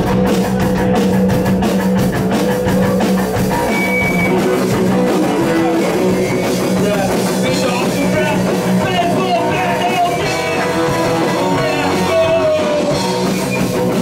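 A live rock band playing loud and steady: electric guitars, bass and a drum kit.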